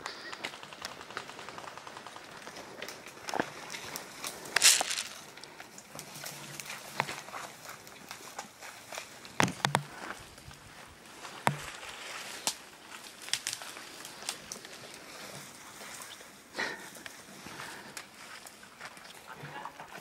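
Footsteps and brushing through pine-forest undergrowth: irregular crackles and snaps of twigs and dry branches, with a louder rustle of branches about five seconds in.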